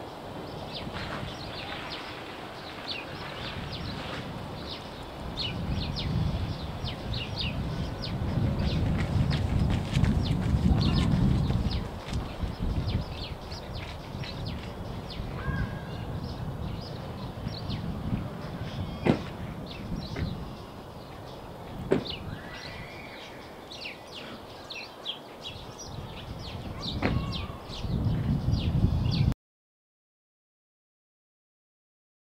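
Outdoor ambience of small birds chirping over and over, with a low rumble that swells twice and a couple of sharp clicks; it all cuts off suddenly near the end.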